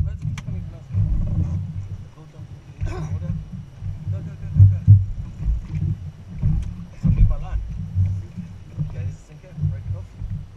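Wind buffeting a mounted camera's microphone on open water, an uneven low rumble that rises and falls in gusts, with a sharp click right at the start.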